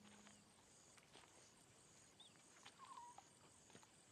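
Near-silent natural ambience: faint birds chirping, with one warbling call about three seconds in, over a steady thin high buzz and a few soft clicks. A low musical tone dies away in the first half-second.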